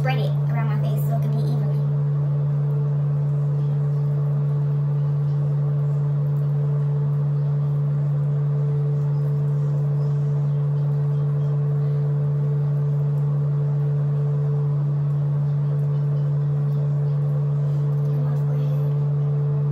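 A steady low hum, one unchanging tone, running at an even level.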